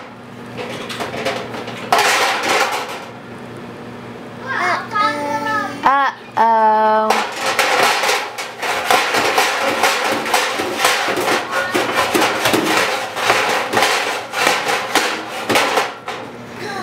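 Metal items rattling and clattering in a stove's storage drawer as a toddler rummages in it, in quick irregular knocks. Toddler babbling in the middle, between the two stretches of clatter.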